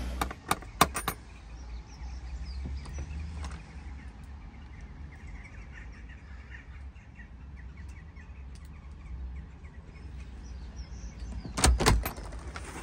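Knocking on a front door: a few quick knocks about a second in, then a louder burst of knocks near the end. A steady low rumble and faint bird chirps lie underneath.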